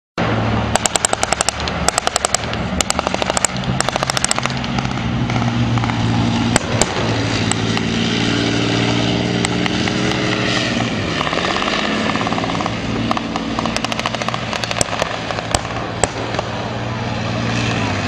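Leopard 2A6 tanks' V12 diesel engines running with a steady low drone, their pitch dipping and recovering about ten seconds in as a tank manoeuvres. Rapid bursts of automatic gunfire in the first few seconds and again near the end.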